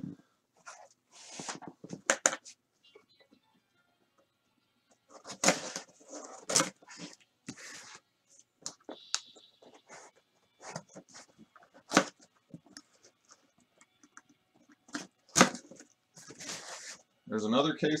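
Plastic wrap crinkling and tearing as the seals on wrapped boxes are broken, with irregular rustles and scattered sharp taps and knocks of the cardboard boxes being handled.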